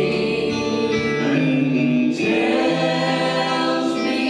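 Live church worship band playing a gospel song, with singing over electric guitar and bass guitar.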